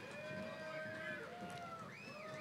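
Faint cheering from the audience for a graduate: several long drawn-out calls and whoops that overlap and slowly bend in pitch.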